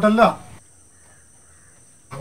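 A man's short voiced exclamation or laugh right at the start, then quiet with a faint, steady, high-pitched insect drone.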